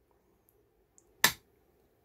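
A single sharp click just over a second in, over faint room tone.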